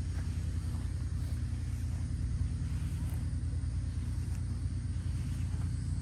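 An engine running steadily, a low rumble with a fine rapid pulse that holds unchanged.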